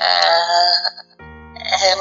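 A song: a singer holds a long wavering note that breaks off about a second in, then steady instrumental accompaniment plays before the voice comes back near the end.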